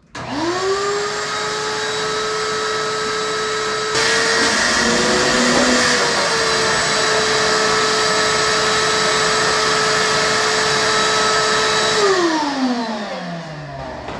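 Shop vacuum switched on, its motor whining up to speed, then running steadily as the hose is held to the drilled holes of a steel fuel tank, sucking up metal shavings. The sound gets louder with more rushing air about four seconds in. Near the end the vacuum is switched off and winds down with a falling whine.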